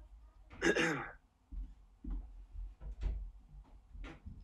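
A man clearing his throat once, about half a second in, followed by faint low thuds and ticks.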